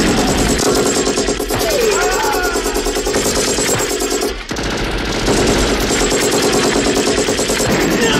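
Sustained rapid automatic gunfire from a film action soundtrack, shots coming in a fast even stream with a brief break about four and a half seconds in. A man's yell rises and falls over the gunfire about two seconds in.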